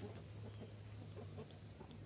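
Faint clucking of free-range chickens and roosters, with a low steady hum that fades out about a second and a half in.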